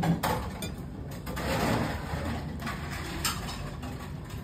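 Café room sounds: scattered clinks and knocks of dishes and cutlery over a low room hum, with a short rise of rushing noise a little before the middle.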